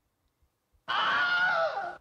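The Wilhelm scream stock sound effect: a man's single short scream, about a second long, starting a little under a second in after near silence, pitched with its pitch dropping at the end. It is played very loud.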